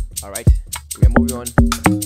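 Amapiano beat playing back from FL Studio at 108 BPM: a four-on-the-floor kick about twice a second, short pitched log drum bass notes between the kicks, and shaker ticks above.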